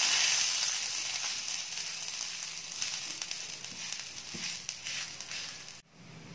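Ragi adai dough sizzling on a hot oiled griddle as it is pressed flat by hand, with a few faint crackles. The sizzle slowly fades and cuts off abruptly just before the end.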